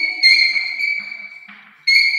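Chalk squeaking on a blackboard during handwriting: a steady, high-pitched squeal that stops briefly near the end as the chalk lifts, then starts again.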